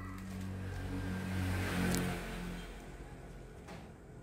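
A motor vehicle going past: a low engine hum that swells to its loudest about halfway through, then fades away.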